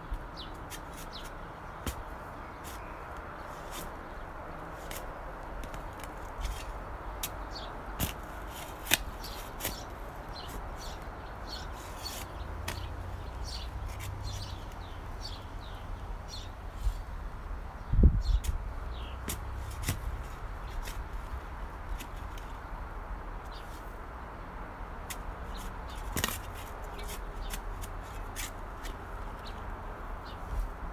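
A shovel digging and scraping in dry garden soil, with scattered sharp clicks and a heavy thump a little past halfway through. Small birds chirp over and over in the background.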